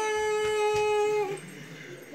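A boy singing alone, holding one long, steady note at the end of a sung line; the note stops about 1.3 seconds in, leaving quieter room sound.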